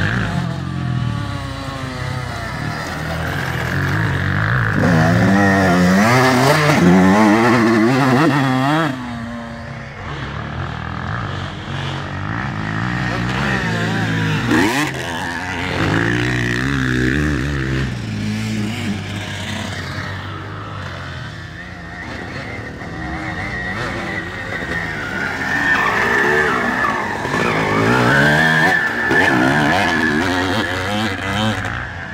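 Motocross dirt bike engines revving hard, the pitch climbing and dropping again and again as the bikes accelerate, shift and back off. The engines grow loudest twice as bikes come close, about a fifth of the way in and again near the end.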